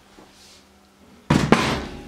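Stainless steel moped subframe being turned over and set down on a wooden workbench: a sudden clatter about a second in, with a sharper knock just after.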